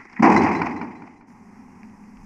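A door slammed shut once: a sudden loud bang about a quarter second in that dies away over most of a second.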